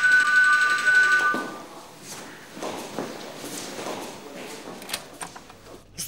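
Electronic doorbell ringing, a steady two-note tone that stops about a second and a half in. Quieter indoor sounds with a few light knocks follow.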